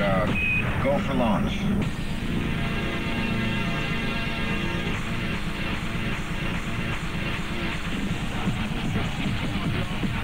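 Electronic dance music with a steady beat and held synth chords. Gliding, voice-like sounds are heard in the first couple of seconds.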